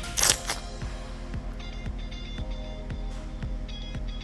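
A brief sucking slurp right at the start as periwinkle meat is sucked out of its shell, followed by background music with a steady beat of about two thumps a second.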